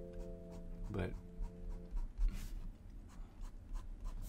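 A fine-tipped felt fineliner pen drawing quick hatching strokes on sketchbook paper: a series of short, light scratches, one after another.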